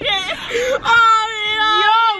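A person's voice in a long, high-pitched, drawn-out squeal, a whimpering sound amid laughter; it rises in pitch at first and then holds steady with a slight waver from about a second in.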